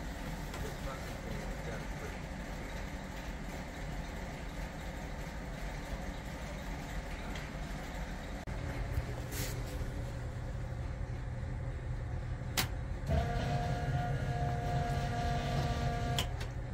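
Engine of a Bombardier snowmobile running on a Holley Sniper EFI setup, a steady low rumble; the engine is being tested because it conks out around 3500 RPM. About 13 seconds in there is a sharp click, then a steady whine joins and the sound gets louder.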